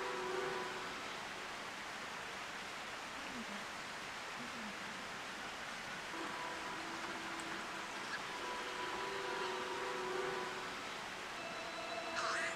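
Steady outdoor night ambience: an even hiss, with a few faint held tones coming and going.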